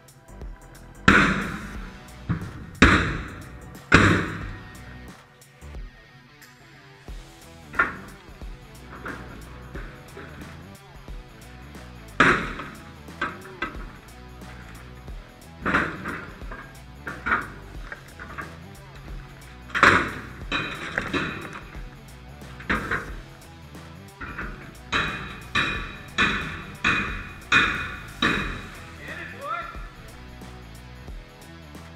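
Loud, irregularly spaced metal strikes on a forcible-entry training door prop, some with a brief metallic ring, under background music. A quicker run of about five strikes comes near the end.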